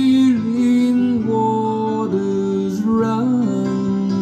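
Recorded pop-ballad music with guitar playing over a pair of Tannoy Canterbury GR loudspeakers, picked up by a tablet's built-in microphone in the listening room. Smooth melodic lines glide and hold throughout.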